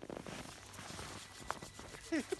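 Wood campfire crackling faintly with small scattered snaps, one sharper snap about one and a half seconds in.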